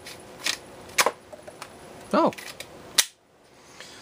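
A small plastic toy bow being handled in the hands: a few sharp plastic clicks, the loudest about a second in and again near the end.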